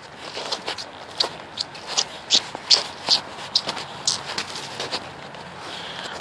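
Footsteps on snow-covered dry leaves: a run of short, crisp crunches, about two or three a second.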